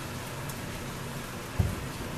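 A steady hiss with a single soft, low thump about one and a half seconds in: a green chile being set down on a wooden cutting board.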